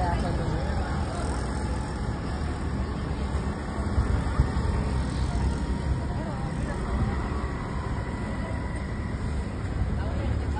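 Audi RS5 Sportback's twin-turbo V6 running at low speed as the car creeps forward, a steady low rumble, with people talking in the background.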